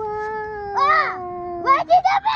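A child's long drawn-out exclamation held on one slightly falling note, overlapped about a second in by a second, higher call that rises and falls, then quick excited shouts near the end.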